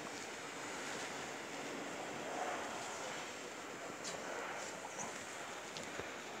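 Faint, steady outdoor background noise: an even hiss with no distinct events standing out.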